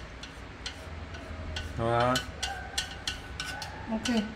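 Wooden chopsticks tapping and scraping inside a Thermomix's stainless-steel mixing bowl as cooked chicken is pushed out onto a plate, giving scattered light clicks. A brief murmur of a voice comes about halfway through.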